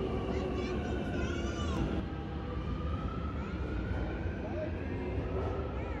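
Metro train running past the platform: a steady low rumble with a thin whine that slowly slides in pitch, and voices in the background.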